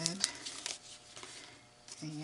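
Paper being handled by hand: a few light clicks and soft rustles as a folded card and a small paper bookmark corner are moved and turned over, fading to quiet near the end.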